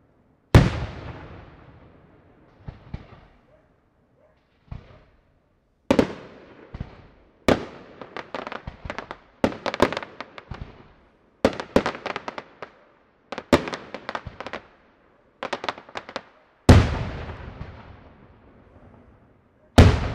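Daytime aerial fireworks bursting overhead. Single loud shell bangs, each followed by a long rolling echo, come about half a second in, around the middle and near the end. Between them are quick volleys of many short crackling reports.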